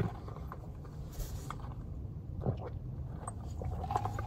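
Quiet sipping of a boba milk tea through a wide plastic straw, with a short hiss about a second in and a few faint clicks, over a steady low rumble in a car cabin.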